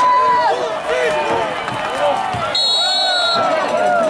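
Football crowd cheering and yelling as the quarterback's run ends in a diving tackle, many voices overlapping. A whistle is blown for under a second about two and a half seconds in.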